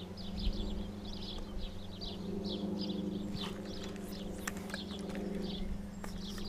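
A small bird chirping over and over, short falling notes about three a second, over a steady low hum. A few sharp ticks come in the middle.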